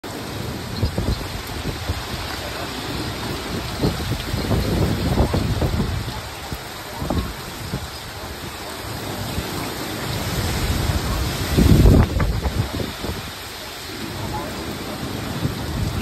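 Hurricane wind and heavy rain: a steady hiss of rain with gusts buffeting the microphone in low rumbles that swell and fade, the strongest about twelve seconds in.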